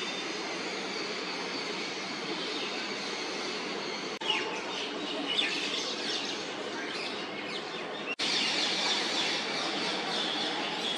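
Outdoor ambience: a steady background rumble and hiss with birds chirping, clearest in the middle section. The sound breaks off briefly at cuts about four and eight seconds in.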